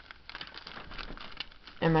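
Faint crinkling and rustling of something handled, a quick run of small crackles; a voice starts just before the end.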